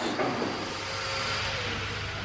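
A steady rushing noise with a faint hum under it.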